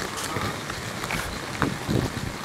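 Wind buffeting the camera microphone as a steady rushing rumble, with a few soft footsteps on pavement while walking.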